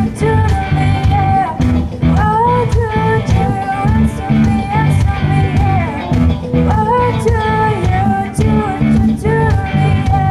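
Live rock band: a female lead singer sings a melody over electric guitar, bass guitar and a drum kit, amplified through a PA.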